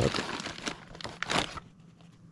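Clear plastic bag crinkling as the bagged power-supply cables are handled and pulled out of a fabric pouch, in a few louder rustles that stop about one and a half seconds in.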